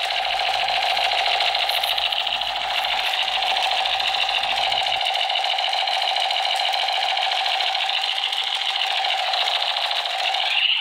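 Battery-powered toy Gatling-style gun playing its electronic rapid-fire sound effect through its small speaker: a continuous, fast, even rattling with a steady electronic tone.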